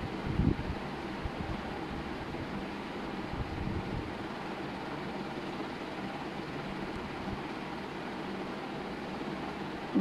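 Steady background hiss with a faint low hum, like a room fan or air conditioner running, and a soft bump about half a second in.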